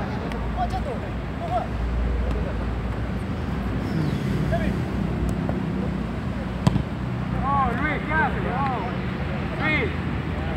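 Footballers shouting to each other over a steady low rumble, with one sharp knock of the ball being kicked about two-thirds of the way through.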